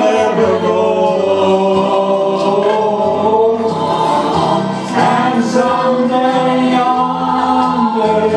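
Two men singing a gospel song together, their voices held in long, sustained notes.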